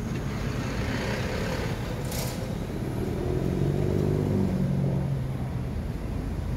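A motor vehicle's engine passing by, a low hum that swells to its loudest about four seconds in, dips slightly in pitch, and then fades.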